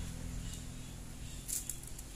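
Dry coconut husk fibres rustling briefly in the hands, about one and a half seconds in, over a steady low hum.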